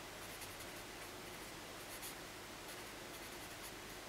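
Felt-tip marker pen writing on paper: faint strokes of the tip across the sheet as words are written out.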